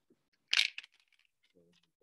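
Plastic ball-and-stick molecular model pieces clattering in the hands: one sharp rattle about half a second in, then a few faint clicks as a bond stick is fitted to a carbon ball.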